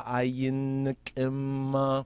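A man chanting in a steady monotone: two long held notes with a short break about a second in.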